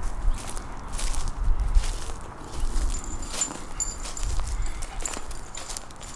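Footsteps walking across a grass lawn, with irregular low rumbling and soft knocks. A faint, broken high-pitched tone comes and goes in the second half.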